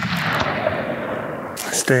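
The long rolling echo of a rifle shot fired a moment before, dying away over about a second and a half: a follow-up shot at a wounded mule deer buck that is still on its feet. A few sharp clicks near the end.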